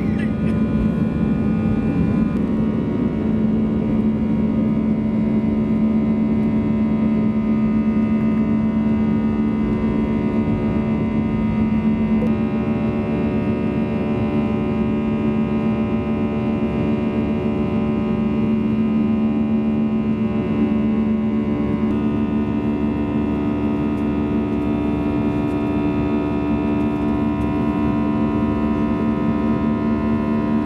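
Cabin noise of an Airbus A320-200 climbing after takeoff: the engines give a steady drone with several held tones over a rush of air.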